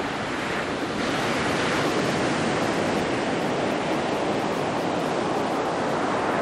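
Ocean surf breaking and washing up a beach, a steady rushing noise that grows slightly louder about a second in.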